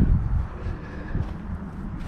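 Low, steady rumble of a jet plane flying overhead.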